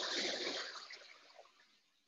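A rush of water spilling from a tipping tray in a cave diorama's wave effect: the tray dips when it fills and dumps its water down over the rocks. The splash is loudest at the start and fades away over about a second and a half.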